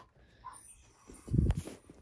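Quiet room noise, then a single low, dull thump with a sharp click on top, a little past halfway.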